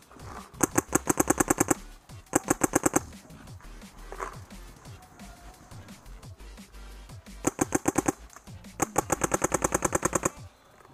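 Paintball marker firing in four rapid bursts of about ten shots a second, two in the first three seconds and two near the end.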